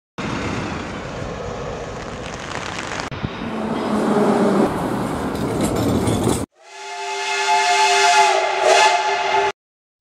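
Cut-together transport sounds: about six seconds of city traffic and vehicle running noise in two abruptly joined pieces, then a horn sounding several notes together, held for about three seconds before it cuts off.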